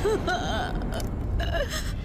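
A woman sobbing: short, broken whimpers and catching breaths.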